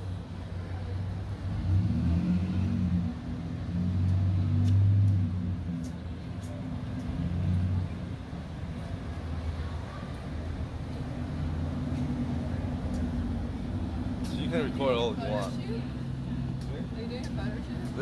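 Street traffic: car engines running close by, swelling as vehicles pass about 2 seconds in and again around 4 to 5 seconds, then a steady low hum. A voice is heard briefly near the end.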